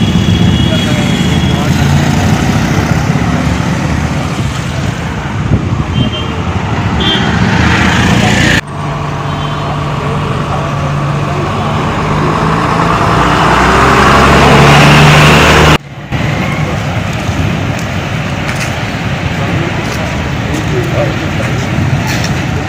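Motor vehicle engines running with road noise and background voices. The sound breaks off sharply twice, once about a third of the way in and again about three quarters through, and it swells toward the second break.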